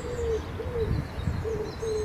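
A bird cooing: a run of short, low, hooting notes, about four in the two seconds, with a low rumble underneath.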